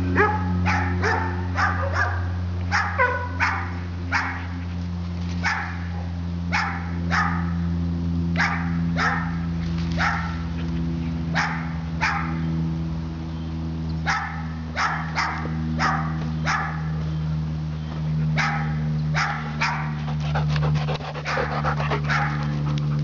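A dog barking over and over, short sharp barks about one or two a second in runs with brief pauses, over a steady low hum.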